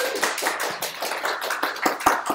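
An audience applauding: a dense, steady patter of many hands clapping.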